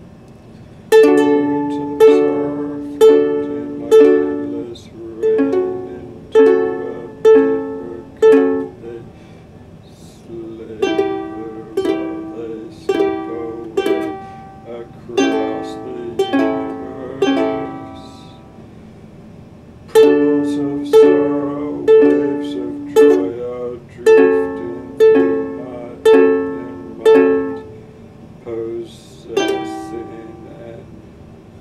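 Ukulele strummed in chords, mostly one strong strum a second, each chord ringing and fading, played in three phrases with short pauses between them.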